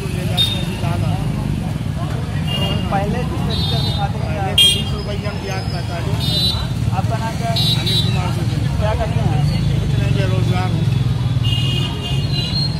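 A man talking over a steady low rumble of road traffic, with several short vehicle horn toots scattered through.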